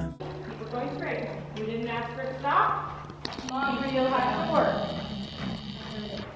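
People talking, unclear words, over a horse's hoofbeats on the dirt footing of an indoor riding arena.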